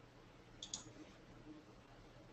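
Two faint computer mouse clicks in quick succession, a little over half a second in, against near silence.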